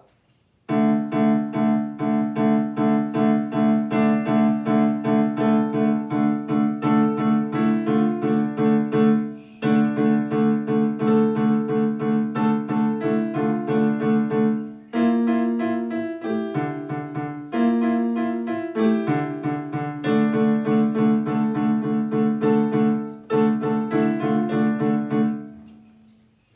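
A child playing a simple piece on a white digital piano: even, steady notes in short phrases, with a few brief breaks between them and the last note dying away at the end.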